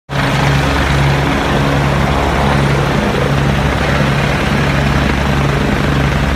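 Helicopter hovering: a steady, loud drone of rotor and engine with a low hum.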